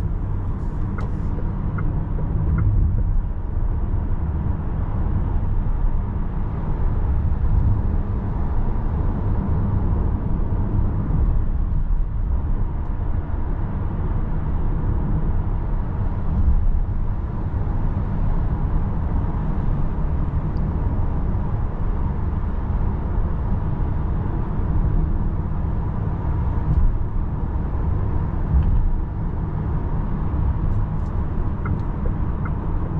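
Cabin noise inside a Volkswagen ID. Buzz Cargo electric van driving and picking up speed from about 45 to 75 km/h: a steady low road and tyre rumble, with no engine note.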